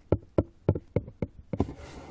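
Fingertips tapping on the side of a cardboard box, about eight quick, uneven taps at roughly four a second. Near the end they give way to a brief scratching of nails on the cardboard.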